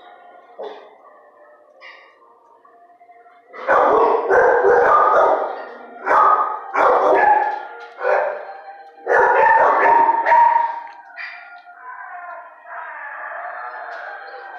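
Dogs barking in a run of loud volleys, starting about three and a half seconds in and stopping around ten seconds in.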